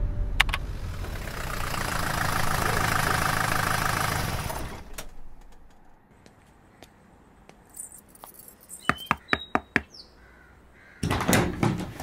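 A rushing noise that swells and then fades out about five seconds in, followed by near quiet and a quick run of sharp clicks with brief high tones about nine seconds in.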